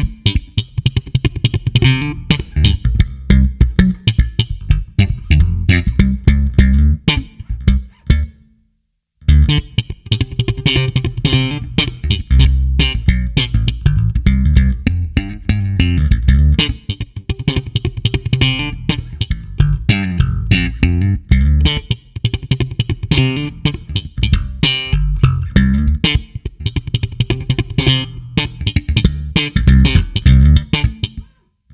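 Ibanez ATK810 electric bass played solo: a busy groove of plucked notes, with one brief stop about eight seconds in.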